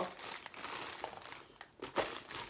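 Rustling and crinkling of toys in their packaging being rummaged out of a child's wheeled flight bag, with a few light knocks near the end.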